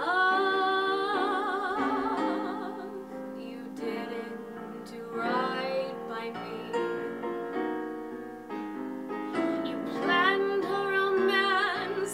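A woman singing a slow ballad with piano accompaniment: a long held note with wide vibrato at the start, then further sung phrases over sustained piano chords.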